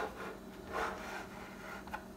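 A 3D-printed plastic model engine block being turned on its printed crate base: a soft rubbing scrape of plastic on the base, swelling about a second in, with a small click near the end.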